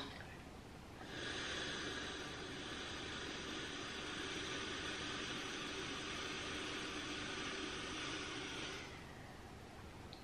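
One long, steady exhale into a Lumen handheld breath analyser, a hiss of breath through the mouthpiece. It starts about a second in and stops shortly before the end, about eight seconds long: the timed breath sample the device analyses for its metabolic reading.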